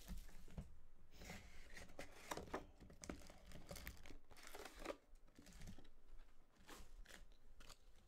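Faint crinkling, rustling and small clicks of a 2020 Select Baseball hobby box being handled: its cardboard lid opened and the foil-wrapped card packs pulled out and set down.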